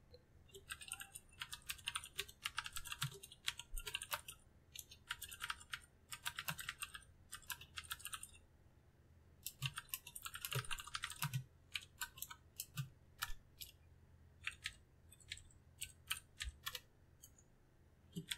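Typing on a computer keyboard: quick runs of key clicks broken by short pauses.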